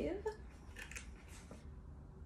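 A woman's voice trails off at the start, followed by a quiet pause with a few faint, short rustling noises and a soft click.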